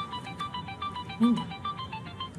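Mobile phone ringtone: a quick melody of short electronic notes, about five a second, ringing as the phone is picked up.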